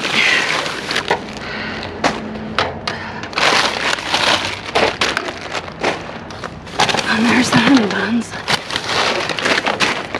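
Plastic snack-pack bags and trash bags crinkling and rustling, with cardboard boxes shifting, as they are handled and pulled about inside a dumpster. The crackles come in irregular bursts.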